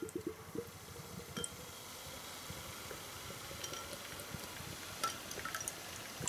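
Lager being poured from a can into a tilted glass: a faint, steady pour with a few light clicks.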